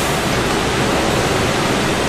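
Heavy rain falling, a steady, even hiss that is very noisy.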